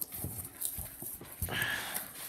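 A taped cardboard box handled and turned on a wooden table: a few light knocks, then a short scraping rustle near the end.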